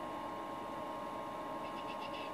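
Steady low room hum and hiss. Near the end come a few faint light taps as a paint-loaded, rubber-tipped spray-paint tool is dabbed onto foam board.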